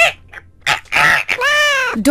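Animal cries: a couple of short calls, then a longer call that rises and falls in pitch.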